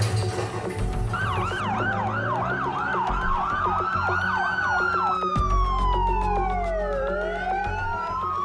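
Emergency-vehicle sirens: a fast yelp of about four sweeps a second starts about a second in, then gives way to two overlapping slow wails that rise and fall. A low thump sounds about five seconds in, under a steady low rumble.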